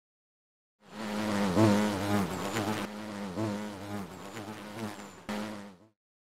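A buzzing like a flying insect, a low hum whose pitch wavers up and down. It starts about a second in and cuts off just before the end, with a brief break shortly before it stops.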